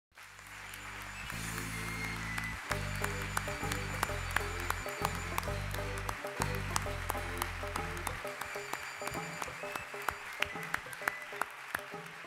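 An audience clapping over music with a deep bass line. The bass drops out about eight seconds in while the clapping goes on, thinning toward the end.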